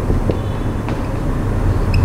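Steady low background rumble with a few faint marker strokes on a whiteboard.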